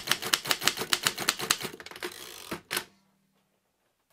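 Vintage manual typewriter typing: a fast run of sharp key strikes, about eight a second, for about two seconds, then a few slower strikes and a last clack nearly three seconds in.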